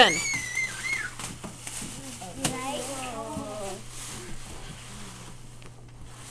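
Wrapping paper being ripped and rustled off a large gift box. A voice gives a drawn-out exclamation at the start, and there are quiet voices in the room.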